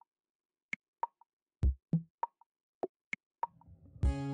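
Sparse background music: a string of short, separate percussive hits, about eight in all, with two low thumps near the middle.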